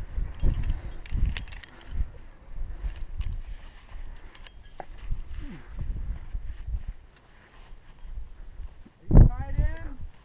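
Wind buffeting the microphone in uneven gusts, with faint clicks of rope and metal climbing hardware at the belay. A voice calls out briefly near the end.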